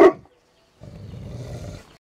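A Neapolitan mastiff gives one deep bark right at the start, cut short. After a brief gap comes about a second of low, rough rustling noise.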